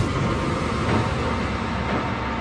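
Logo-intro sound effect: a dense rushing noise that swells sharply at the start, then holds steady over a low rumble.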